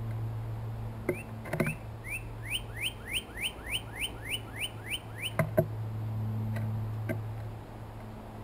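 Northern cardinal singing a run of about a dozen clear, rising whistled notes, about three a second, for some four seconds. Sharp knocks from a blue jay pecking seed on the wooden feeder tray come just before the song and just after it, the loudest near the end of the song.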